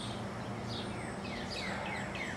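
A songbird calling outdoors: a run of quick down-slurred whistled notes, several a second, starting about half a second in, over steady background noise.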